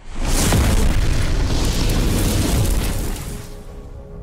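Cinematic explosion sound effect for an animated logo intro: a sudden boom with a rushing, rumbling blast that holds for about three seconds, then fades.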